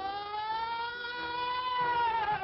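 A long, siren-like wailing tone on an old, narrow-band cartoon soundtrack. It glides slowly upward, holds, and starts to fall near the end, over a fainter steady lower note.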